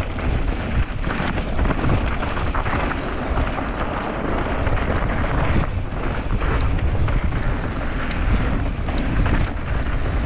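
Wind buffeting a GoPro's microphone as a downhill mountain bike rolls fast over a rocky dirt trail, a steady rumbling rush. Tyres on loose stones and the bike rattling over the rough ground add many short clicks and knocks.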